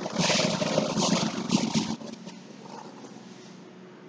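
Blackboard duster rubbed across a chalkboard in several quick scrubbing strokes, erasing the writing. The strokes stop about halfway through.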